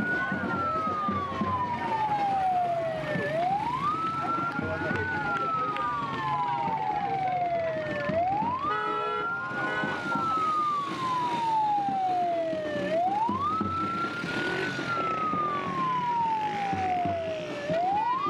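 Ambulance siren on a slow wail: each cycle climbs quickly, then falls slowly over about three seconds, repeating about every four and a half seconds.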